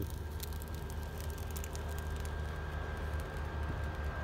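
Brush pile burning in an open pit, with scattered faint crackles over a steady low rumble.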